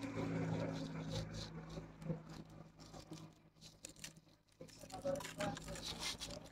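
Dry rice-hull and cocopeat potting mix rustling and crackling as gloved hands dig into it and pull a plant's root ball out of a plastic pot, in irregular scratchy bursts. A steady low hum sits underneath during the first couple of seconds.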